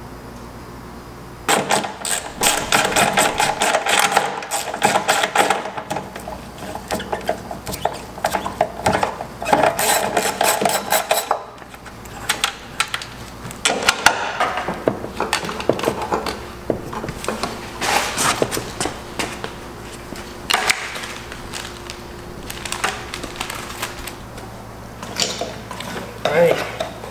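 Rapid mechanical clicking and rattling of tools working the fasteners and fittings on top of an aluminium car fuel tank. It comes in two long runs with a short lull between them.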